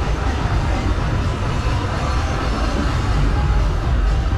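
Music playing with heavy bass, over a steady low rumble.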